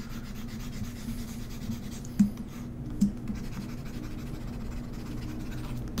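A pointing device sliding and scratching softly across a desk surface while a dodge brush is painted on screen, with two short clicks a little over two and three seconds in, over a steady low electrical hum.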